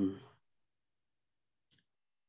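The tail of a drawn-out spoken 'um', then dead silence broken only by one faint, very short click near the end.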